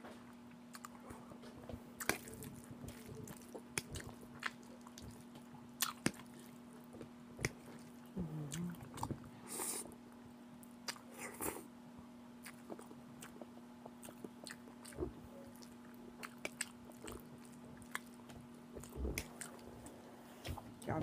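Close-miked eating of ramen noodles with melted cheese and sausage: wet chewing and lip smacks, with many short sharp smacks scattered throughout and a noodle slurp just before the halfway point. A faint steady hum runs underneath.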